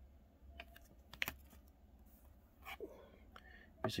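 Faint scattered clicks and taps of rigid plastic top loaders holding trading cards being handled and swapped, a cluster of them about a second in and a few more near the three-second mark.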